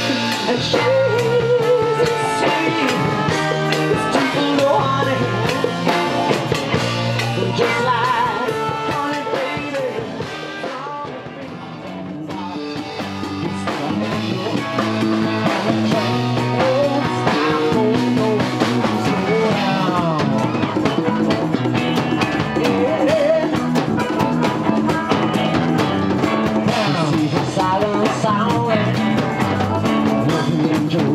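Live blues-rock band playing: electric guitar with bending lead lines over bass guitar and drum kit. The music drops in level for a moment near the middle, then builds back up.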